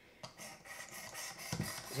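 Abrasive sharpening rod of a Work Sharp Precision Adjust sharpener being stroked along a knife blade: a repeated scraping rasp of steel on abrasive, faint at first and louder from about one and a half seconds in. The strokes now run smooth, which the sharpener takes as the edge coming along.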